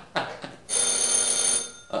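A single electronic ring: a steady bell-like tone with several overtones, held for about a second.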